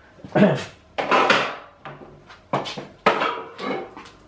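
A man coughing several times in short, harsh bursts.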